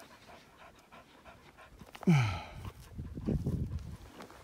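A working dog panting in quick rhythmic puffs, heard mostly in the second half. About two seconds in, a short call that falls steeply in pitch is the loudest sound.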